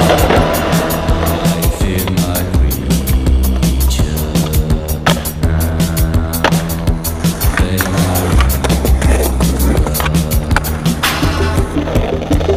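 Skateboard on pavement, wheels rolling with a few sharp clacks of the board popping and landing, mixed under music with a steady beat and deep bass.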